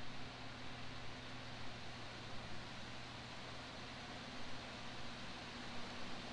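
Faint steady background hiss with a low, constant hum and no distinct events: ambient tone.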